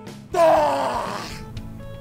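A man's loud, hoarse haka-style shout, falling in pitch over about a second and fading out, over background music.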